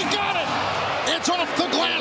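Basketball arena crowd noise with voices, and a few sharp knocks in the second half.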